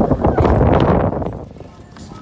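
Loud rumbling noise on the phone's microphone, filling about the first second and a half and then dropping away.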